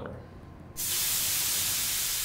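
A frying pan flaring up in a burst of flame as liquor is poured in: a flambé. It comes in as a sudden loud hiss about a second in and then fades slowly.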